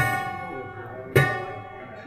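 Two notes struck on a prepared grand piano whose strings are fitted with bolts, screws and rubber, about a second apart, each with a sharp attack and a pitched ring that dies away.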